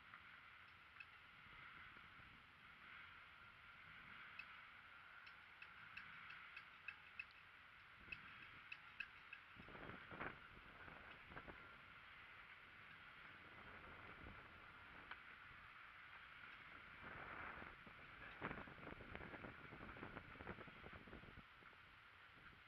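Near silence: faint outdoor background with a steady low hiss, scattered faint ticks and a few soft knocks.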